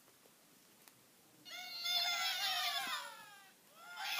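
A squawk from an Angry Birds plush toy's sound chip, starting about a second and a half in: one high, falling cry lasting about two seconds.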